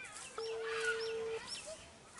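Birds chirping in short gliding calls, with one steady, even tone held for about a second starting about half a second in.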